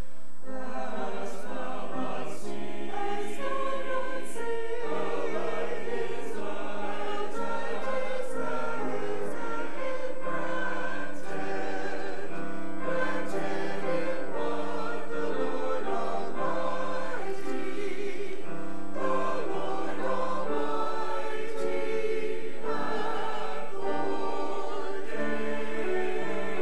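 A church choir of men and women singing together.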